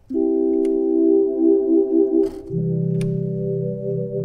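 Lowrey Palladium electronic organ sounding sustained flute-voice chords, the tone pulsing in level from the flute vibrato/tremolo effect. About two and a half seconds in, lower notes join underneath and the chord shifts.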